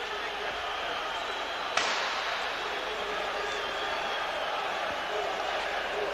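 Steady stadium crowd noise from a football match broadcast, with a single sharp knock about two seconds in.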